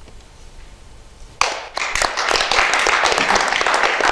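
A small group of people applauding, starting suddenly about a second and a half in and going on steadily.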